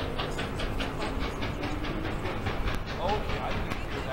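Norfolk & Western 611, a J-class 4-8-4 steam locomotive, approaching with its exhaust beating in a rapid, even rhythm, about six beats a second, over a steady rumble.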